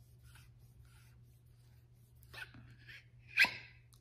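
Faint handling of a metal lightsaber hilt, then one short, sharp pop about three and a half seconds in as the tight-fitting emitter section pulls free of the hilt.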